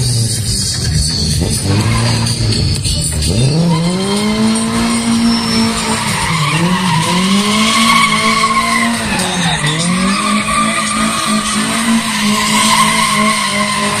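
Lada 2101 engine revved hard while the car slides round in tight circles, its tyres squealing. The revs are low for the first few seconds, climb about three seconds in and are held high, dipping briefly twice.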